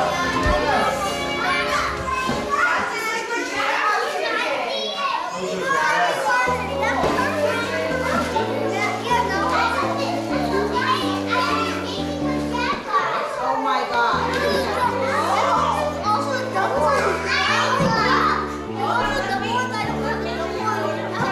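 Children chattering and calling out over each other, with music playing underneath; a bass line of held notes stepping up and down comes in about six seconds in.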